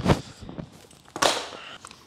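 A thump as a pair of hockey shin pads is set down, then a brief rustle of a fabric hockey gear bag being rummaged about a second later.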